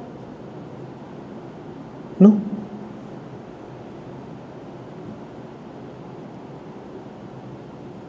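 Pause in a man's speech into a table microphone: a faint, steady room hiss, broken about two seconds in by one short vocal sound from him.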